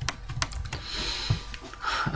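Computer keyboard keys clicking as a few separate key presses, spread unevenly.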